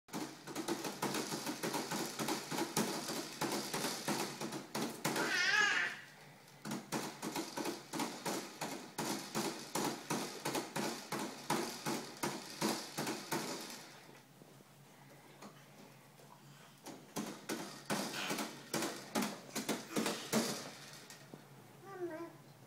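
Hard plastic toys on a baby activity centre clattering and rattling in a rapid run of clicks and knocks, with a lull partway through. About five seconds in, a short, high warbling sound rises above the clatter.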